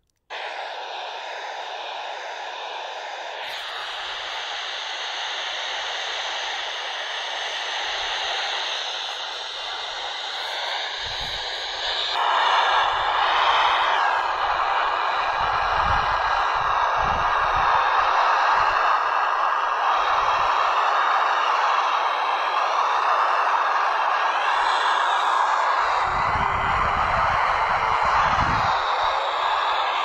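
Hiss from an FM handheld radio's receiver, a Kenwood TH-D72A on a whip antenna listening to the SO-50 satellite's downlink, with faint wavering signals buried in the noise. The hiss cuts in suddenly and grows louder about twelve seconds in.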